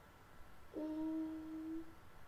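A girl's closed-mouth "hmm": one steady hum about a second long, starting a little before the middle, as she hesitates while searching for a word.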